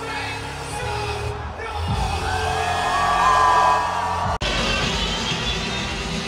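Live electronic dance music from a festival stage, recorded through a phone's microphone, with whoops from the crowd. The sound breaks off for an instant about four and a half seconds in, at a cut, and the music carries on.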